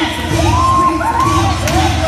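Vogue ballroom beat with a steady bass pulse, and several voices whooping and cheering over it in rising and falling calls.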